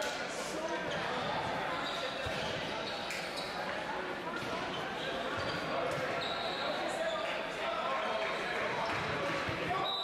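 Sports hall ambience: indistinct chatter of players and spectators, echoing in the large hall, with scattered thuds of volleyballs being hit and bouncing on the court floor.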